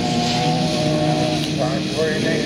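Engines of several autocross cars running at steady high revs as they race on a dirt track, giving a held, even note made of several overlapping tones.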